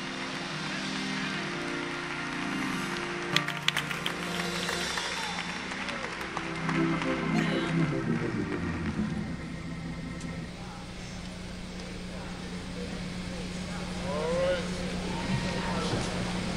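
A congregation applauding and calling out over sustained organ chords. The applause thins out about halfway through, leaving a single held organ note and scattered voices.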